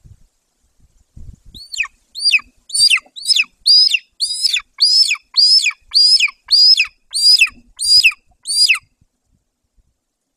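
Golden eagle calling: a series of about fifteen high, thin whistles, each sliding sharply down in pitch, at roughly two a second. The series starts a couple of seconds in and stops about a second before the end, with a few soft knocks just before it.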